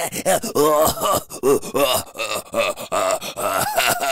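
A man's voice vocalizing in character: a quick run of groans and grunts, with no recognizable words.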